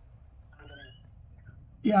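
Low steady room hum, with a brief faint rising pitched sound about half a second in; a man's voice starts speaking just before the end.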